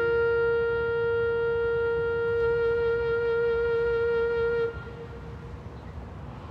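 A horn blown as a solo memorial call holds one long, steady note that stops abruptly about four and a half seconds in. It comes right after two shorter notes a fourth lower.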